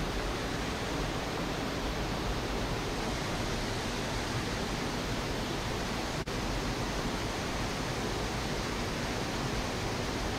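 Water gushing through a canal lock gate and falling into the lock chamber: a steady, even rush, with a brief break about six seconds in.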